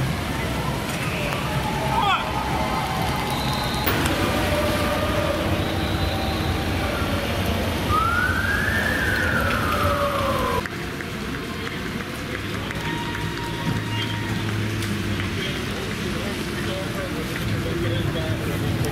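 Street noise and crowd voices, with an emergency vehicle siren giving one rising and falling wail about eight seconds in.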